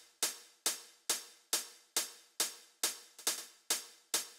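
Soloed electronic closed hi-hat playing a steady pattern of short, crisp hits about twice a second, with a faint extra hit slipped in just after three seconds. The part has been time-compressed (sped up) in Ableton Live, and the faint extra hit is one of the little extra ghost hits that sound off the grid.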